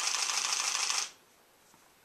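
A burst of rustling, crackly noise lasting about a second that cuts off sharply.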